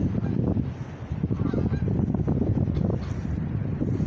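A flock of geese honking as they fly overhead, a few faint calls about a second and a half in, over heavy wind rumble on the microphone.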